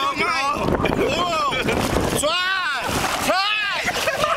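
Men shouting in three drawn-out cries that rise and fall in pitch, over a steady rush of wind on the microphone.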